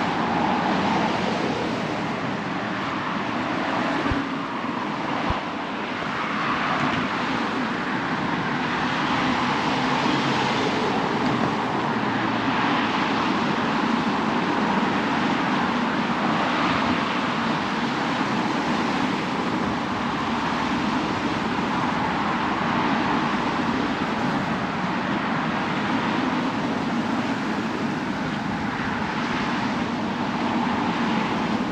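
Steady road traffic noise from a nearby street, swelling gently now and then as vehicles pass.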